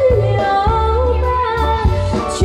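A woman singing into a microphone with a live band: sustained bass notes and drum hits underneath her wavering held melody.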